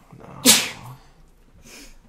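A person's single sharp, explosive burst of breath close to the microphone about half a second in, trailing off over the next half second; a fainter hiss of breath follows near the end.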